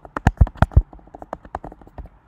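Typing on a computer keyboard: a quick run of keystrokes, louder in the first second and lighter after.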